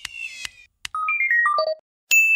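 Electronic sound effects: a falling whistle tone that fades out, a few sharp clicks, then a quick run of short beeps stepping down in pitch.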